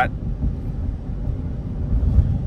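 Low, steady running noise of a C7 Corvette Z06 and its supercharged 6.2-litre V8 cruising at low speed, engine and road noise as heard inside the cabin.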